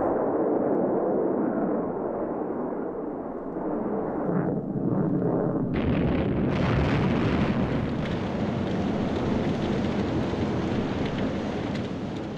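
A4 (V-2) liquid-fuel rocket's engine roaring on its launch stand in a failed test firing, a continuous deep rumbling roar that grows louder and harsher about six seconds in as the rocket blows up in a cloud of fire and smoke.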